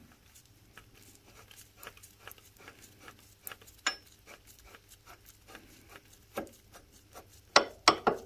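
Steel nut being spun off a threaded stud by gloved fingers: a run of faint metallic ticks and scrapes from the threads, with a few louder metal clinks, most of them near the end.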